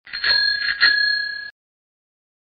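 A bell rung twice in quick succession, its ring cut off abruptly about a second and a half in.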